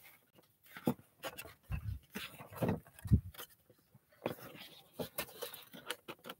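Large sheets of drawing paper being handled and turned over, with intermittent rustling and sliding and a few soft knocks.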